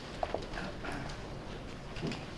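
Footsteps and light taps of people moving about near the microphone, with two sharp taps close together about a quarter second in, over the low hum of a large meeting room.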